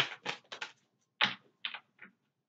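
A deck of reading cards being shuffled and handled, a quick run of short flicking slaps followed by two or three separate snaps as cards come out onto the table.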